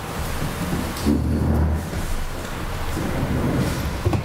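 Several people sitting down at tables: chairs moving on a wooden floor and shuffling and handling noise picked up by the table microphones. There is a heavy low rumble about a second in.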